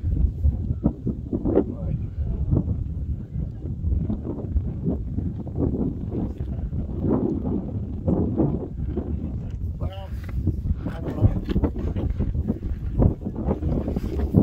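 Wind buffeting the microphone, heavy and gusty in the low end, with indistinct voices of people talking.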